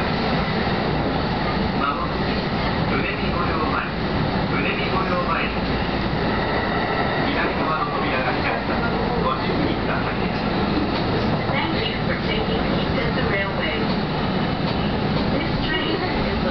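Kintetsu electric train running along the track, heard from behind the driver's cab: a continuous rumble of wheels and running gear with a faint steady whine.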